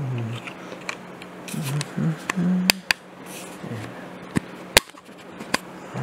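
Several sharp clicks from ear-cleaning tools working on earwax, the two loudest about halfway through and two-thirds of the way in. A low voice murmurs briefly in between.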